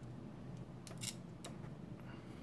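Three short, sharp plastic clicks, about a second in and half a second apart, as small cable connectors and a circuit board are handled.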